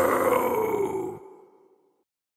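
The end of a death/thrash metal track: the last held note, slightly falling in pitch, rings on alone and dies away into silence in about a second and a half.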